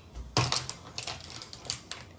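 Makeup brushes and cosmetic items clicking and clattering as they are handled over an open makeup bag: a quick, uneven run of light taps, the sharpest about half a second in.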